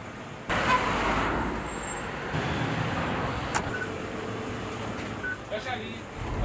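Street traffic noise, coming in abruptly about half a second in and running steadily, with one sharp click near the middle.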